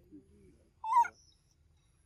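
A macaque gives one short, loud call about a second in.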